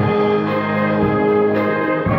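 School wind band playing a Polish Christmas carol: flutes, clarinets, French horn and tuba holding sustained chords, with a new phrase coming in at the start.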